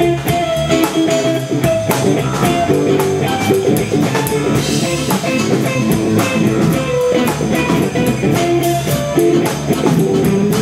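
Live blues band playing an instrumental passage: electric guitar single-note lines, some held and bent, over a steady drum kit beat, with a second guitar and keyboard in the band.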